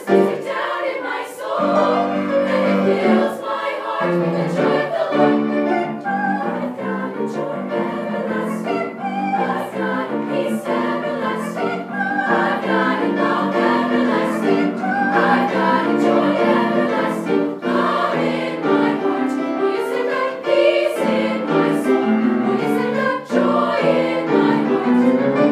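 Girls' treble choir singing in harmony with piano accompaniment, continuously through the whole stretch.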